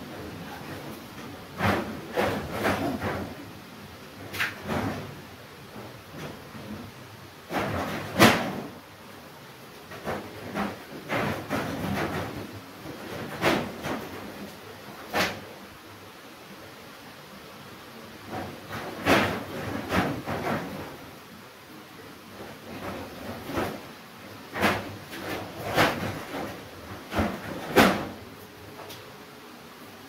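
Masking tape being peeled off a painted wall, strip after strip: repeated short tearing rasps, some sharp and some drawn out over about a second, with pauses between them.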